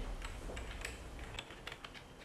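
Faint, irregular small clicks as the MicroREC smartphone adapter is threaded back onto the microscope's camera port by hand.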